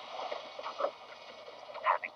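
Faint, muffled TV-show soundtrack playing from a tablet's small built-in speaker, with a few brief sounds near the end.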